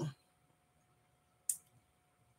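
A single short, sharp click about one and a half seconds in, in an otherwise near-silent pause.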